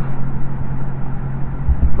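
A steady low hum with rumble beneath it: background noise on the recording.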